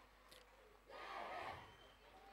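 Faint crowd voices shouting together in unison, one shout lasting about half a second, roughly a second in.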